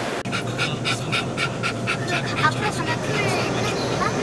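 A small curly-coated dog panting fast, about five or six breaths a second, for roughly two seconds, over a steady low hum from inside the car. It is followed by a few short rising and falling high-pitched sounds.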